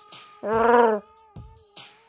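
Chewbacca's Wookiee growl ("gnarrn"), one held call of about half a second, over a steady background music drone.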